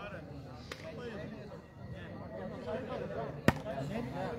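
Low murmur of spectators' voices, then a single sharp slap of a hand striking a volleyball about three and a half seconds in, a serve putting the ball in play.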